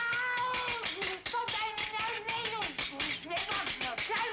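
A man's voice wailing a wordless, flamenco-style song in long held, wavering notes over a fast, even run of hand claps.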